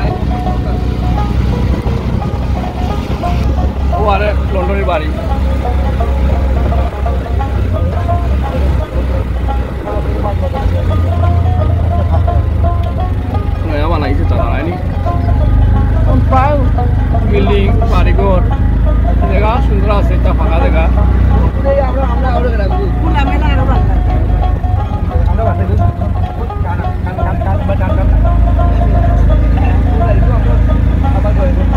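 Steady low rumble of a moving motor vehicle heard from inside, with voices over it.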